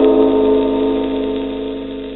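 A struck gong-like tone made of several steady pitches, ringing and slowly fading. It closes the Telefunken record announcement.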